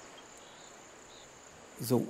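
Faint, quiet outdoor background with a thin, steady high-pitched tone and no clear event; a man's voice begins near the end.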